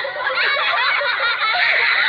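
Many high voices laughing and chattering at once in a dense, continuous, overlapping stream.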